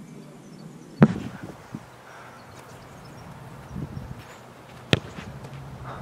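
A kicked Australian rules football landing with a loud, sharp thud about a second in. A second, smaller sharp knock comes near the end.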